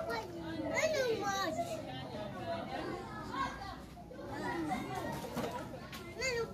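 Children's voices chattering and calling, with high, lively speech running on throughout and no clear words.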